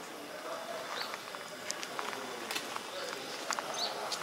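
Outdoor ambience of indistinct background voices, with a few short, high bird chirps and scattered light clicks.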